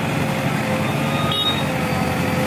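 JCB 3DX backhoe loader's diesel engine running steadily while the machine works.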